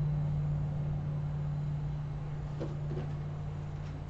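A steady low hum that slowly fades, with a faint soft tap about two and a half seconds in.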